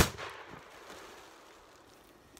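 A single shotgun blast from a Rossi Tuffy .410 single-shot shotgun, sharp and loud at the very start, its echo dying away over about a second and a half.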